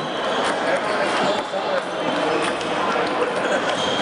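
Table tennis balls clicking off paddles and tables at irregular intervals, over the chatter of voices in a busy hall.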